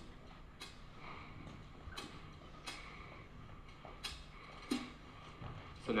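Faint, evenly spaced drum hits from an isolated drum track played on its own, over a steady low hum.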